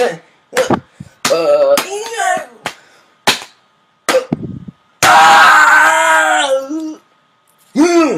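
A person's excited vocal outbursts: short cries in the first few seconds, then a loud yell about five seconds in that lasts almost two seconds. A few sharp slaps or knocks fall between the cries.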